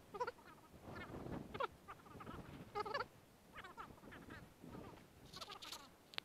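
Duck quacking: a series of about seven short, nasal calls at irregular intervals, the last one near the end the brightest.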